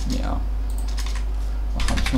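Computer keyboard being typed on: a handful of scattered keystrokes, bunched more closely near the end, over a steady low hum.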